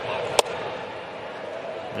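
A 93 mph sinker popping into the catcher's mitt, a single sharp pop about half a second in, over steady ballpark crowd noise.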